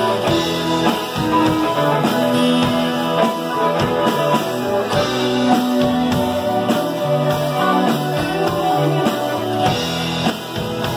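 Live rock band playing: electric guitars and keyboard over a steady drum-kit beat.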